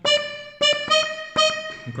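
Major-minor organetto (diatonic button accordion) playing a short tarantella practice phrase of five detached, evenly spaced notes. The phrase is button 3 twice on the closing bellows, then button 4 on the opening bellows.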